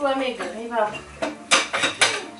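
A voice in the first second, then a quick run of four sharp clinks of hard objects knocking together, like dishes or cutlery, near the end.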